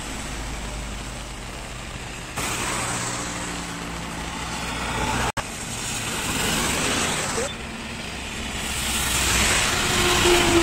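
Road traffic passing on a wet highway: tyres hissing on the rain-soaked road, with engine hum from passing buses, cars and a motorcycle. The sound changes abruptly at edits about two and a half and seven and a half seconds in, and drops out for a moment about five seconds in.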